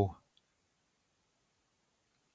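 The end of a spoken word, then near silence with a single faint click just under half a second in.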